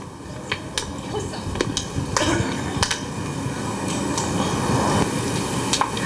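Microphone handling noise: a string of sharp clicks and knocks over a rustle that grows louder towards the end.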